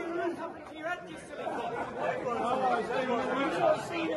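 Several men talking over one another in a room: indistinct, overlapping chatter with no single clear voice.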